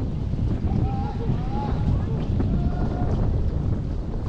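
Wind buffeting the microphone over the rush and splash of water along a six-seat outrigger canoe's hull as the crew paddles, with faint distant voices.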